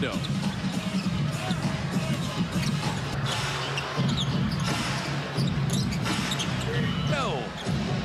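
A basketball dribbled on a hardwood arena court during live play, over a steady arena din with music beneath.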